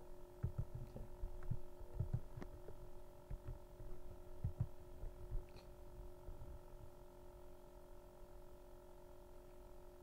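Steady electrical hum with a few faint, short low thumps scattered through the first half.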